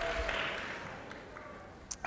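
Quiet room tone of a hall, the echo of the last words fading away, with a faint steady hum early and a short hiss just before speech starts again.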